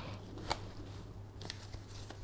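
Stroller backrest being raised back upright by hand: one sharp click about half a second in, then a few fainter clicks and rustles from the recline adjuster and fabric.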